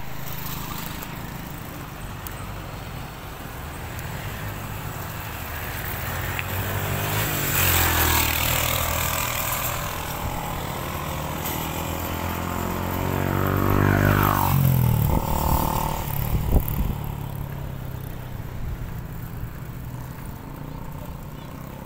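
Road traffic: motor vehicles passing over a steady engine hum. Two pass-bys swell and fade, one about a third of the way in and a louder one about three-quarters through, whose engine pitch drops as it goes by. A short sharp knock follows soon after.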